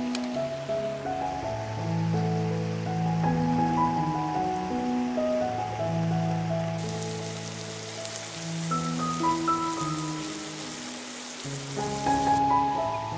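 Background music of slow, held notes. From about seven seconds in, a steady hiss of chicken pieces and onion sizzling in oil in a frying pan comes up clearly under the music.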